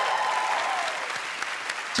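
Studio audience applauding, easing off toward the end.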